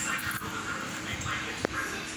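A young goat making short, high whimpering cries, with a single sharp click about one and a half seconds in.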